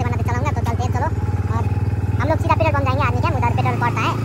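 Motorcycle engine idling steadily under a man's talking; the low engine note changes near the end.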